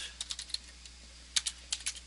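Computer keyboard typing: a short run of keystrokes, a pause of under a second, then another quick run of keystrokes.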